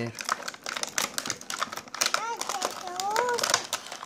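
Clear plastic toy packaging crinkling and crackling in quick, irregular clicks as it is handled and pulled open by hand. A child's short high-pitched vocal sounds come in about two and three seconds in.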